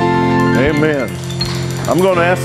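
Live church worship music at the end of a song, the instruments holding a sustained chord. A voice briefly comes over it about half a second in.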